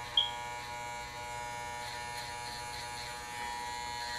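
Electric hair clippers buzzing steadily while cutting a stencilled design into short hair. A brief, sharp high-pitched blip sounds about a quarter second in.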